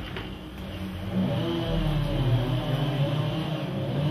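A motor vehicle engine running, a low steady hum that grows louder about a second in.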